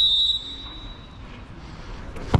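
Referee's whistle: one long steady blast, loud at first and fading out about a second in, signalling the dead-ball kick to be taken.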